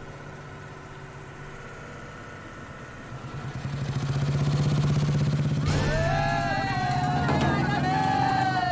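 A steady vehicle engine drone, with a motorcycle engine coming up close, growing louder from about three seconds in. From about six seconds a voice calls out over it in long, drawn-out shouts.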